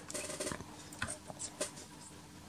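Naim NAC D3 CD player spinning up a disc under its original magnetic puck: a fast faint rattle in the first half second, then a few scattered clicks. This is the rattling and knocking of a disc that slips on the turntable, its centre hole too large and the puck not clamping it firmly enough, so the player has difficulty reading it.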